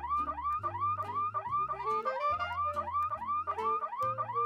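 A mobile phone's electronic ringtone: a short rising chirp repeating rapidly and evenly over a changing bass line.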